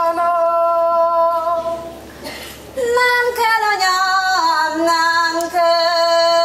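A lone woman's voice singing a slow, unaccompanied Csángó folk song, long held notes with ornamented turns, breaking off for a breath about two seconds in before going on.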